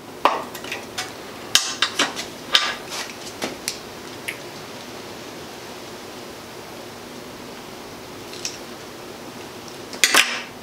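Sharp metallic clicks and clinks of steel pliers squeezing a steel roll pin into a nose cone and knocking on a steel workbench. The clicks come in a quick cluster over the first few seconds, with one or two lone clicks later over a faint steady hiss.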